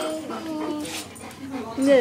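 Dog whining in long, drawn-out notes with a tennis ball held in its mouth; the last note rises in pitch near the end.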